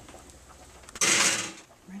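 Metal baking pan going into an electric oven, with the oven door worked: one sudden scraping, creaking noise about a second in that lasts about half a second.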